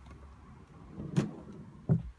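Two sharp wooden knocks, the first about a second in and the louder, the second just before the end, from the wooden comic-book clearance drawer and bins being handled.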